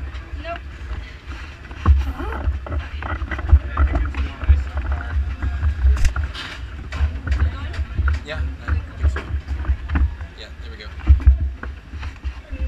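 Wind buffeting the microphone in an uneven, gusting rumble, with faint voices in the background and scattered clicks and knocks.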